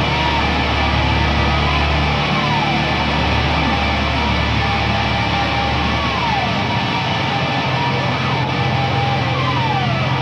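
Heavy alternative-metal rock track with distorted electric guitars over sustained bass notes, without vocals. High guitar notes slide down in pitch several times, and the bass line steps up to a higher note about seven seconds in.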